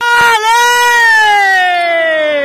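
A single high human voice holding one long shout that starts abruptly and slowly falls in pitch.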